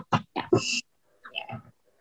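A woman's voice in brief bits: a short "yeah", a hissing breath about half a second in, then a faint murmur.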